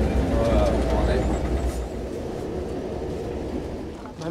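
Low rumble of the MAN KAT off-road truck driving, heard from inside the cab, with faint voices early on; the rumble drops away about halfway through, leaving a quieter steady noise.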